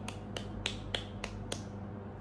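A run of short, sharp clicks, evenly spaced at about three a second, that stop a little past halfway, over a steady low hum.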